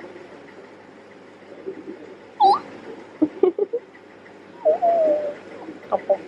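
A young child's playful, high-pitched vocal noises: a short squeak about halfway through, a few small giggling sounds, then a drawn-out, slowly falling "hooo" near the end.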